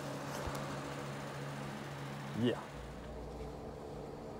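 A steady low mechanical hum that gives way, a little past the middle, to a low rumble.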